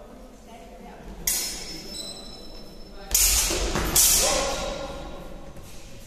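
Steel fencing swords clashing in a bout: a sharp metallic hit that rings on for over a second about a second in, then two louder hits about three and four seconds in.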